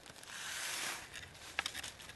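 Clear zip-top plastic bag rustling as it is pulled open and handled, followed by a few small clicks and taps as medium is spooned into it.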